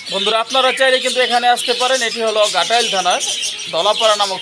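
Many caged birds chirping and chattering together, with a man talking over them.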